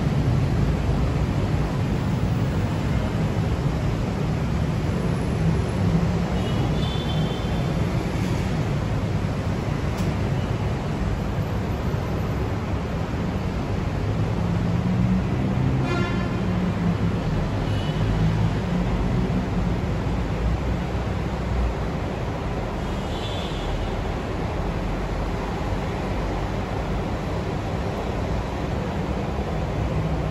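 Steady low rumble of road traffic, with a few faint, brief high-pitched tones scattered through it.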